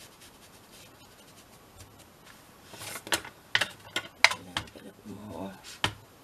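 Craft supplies being handled on a tabletop: a brief rubbing sound, then several sharp plastic clicks and taps, consistent with opening an ink pad case and dabbing an ink applicator tool onto the pad. They start about three seconds in.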